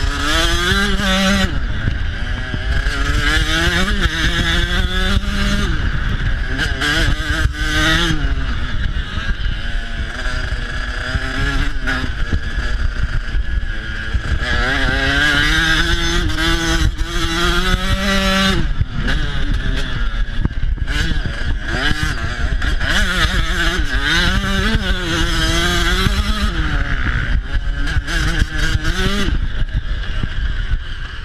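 Dirt bike engine ridden hard, its pitch climbing and dropping again and again as the throttle is opened and closed.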